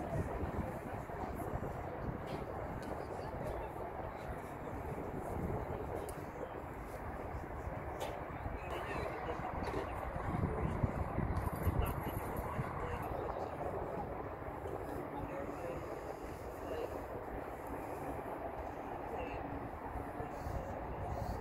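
Indistinct voices of players and people on the sideline, with no clear words, over a steady outdoor background noise.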